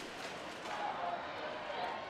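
Football stadium ambience during play: a steady crowd hubbub with faint distant voices and shouts, and no single loud event.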